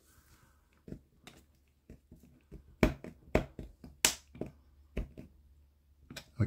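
Irregular sharp clicks and taps from a small hand screwdriver driving a tiny screw into a plastic model part while the parts are handled, the sharpest click about four seconds in.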